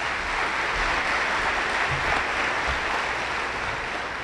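Audience applauding steadily, easing off near the end.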